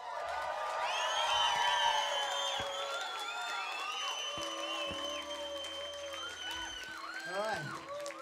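Concert audience cheering, yelling and whistling after a song, with long high whistles held over the crowd noise. A steady low tone from the stage comes in about halfway through.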